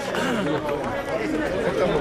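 Crowd chatter: many people talking at once in a jumble of overlapping voices.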